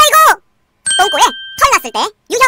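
Speech: a dubbed cartoon voice gives a short shouted exclamation. Then, after a brief gap, a voice speaks again, with a steady chime-like tone held under its first part.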